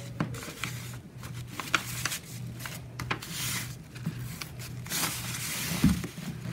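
Sheet of printer paper rustling and crackling as hands fold it and press the crease flat, with scattered sharp crackles and longer rustles a few seconds in and near the end.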